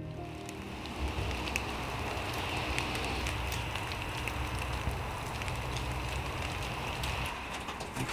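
Steady outdoor ambient noise, an even hiss with scattered light ticks, like light rain.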